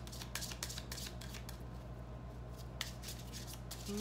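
Tarot deck being shuffled by hand, the cards slapping and sliding against each other in a quick, irregular run of small clicks.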